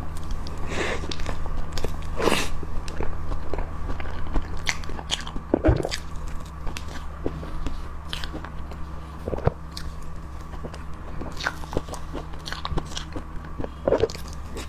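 Close-miked eating of a milk cream cake: wet chewing and lip smacking on soft cream, with irregular small crunches from the cookie crumbs in it. A steady low hum runs underneath.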